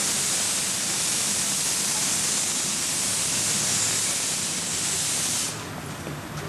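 Small narrow-gauge steam locomotive venting steam: a loud, steady hiss that cuts off suddenly about five and a half seconds in.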